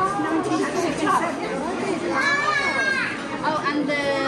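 Several people talking over one another, with one high voice rising and falling about two seconds in.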